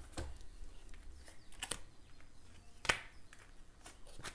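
Oracle cards being handled and laid down on a cloth-covered table: a few soft taps and clicks, the sharpest nearly three seconds in.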